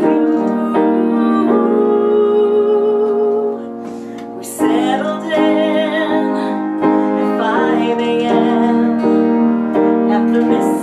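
A woman singing a slow song to piano and acoustic guitar accompaniment. She holds one long note with vibrato, the music drops back briefly about three and a half seconds in, and the voice and chords return a second later.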